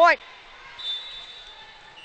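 Faint gym hall ambience during a volleyball match, with a brief, faint high-pitched tone about a second in.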